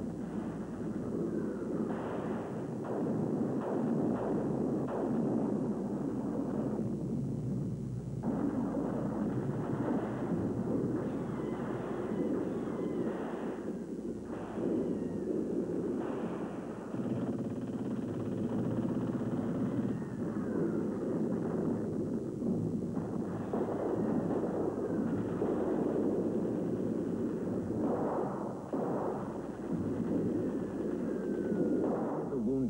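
Continuous battle noise of artillery explosions and gunfire, dense and unbroken, with a few falling whistles.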